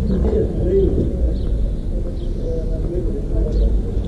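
Outdoor ambience: a steady low rumble with a few faint, short calls scattered through it.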